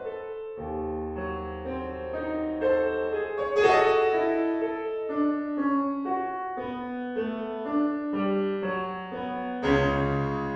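Solo piano in C sharp minor, played back by music notation software: a slow melody over rolling left-hand arpeggios. A loud accented (sforzando) chord sounds a few seconds in, and a heavy fortissimo chord with deep bass octaves sounds just before the end.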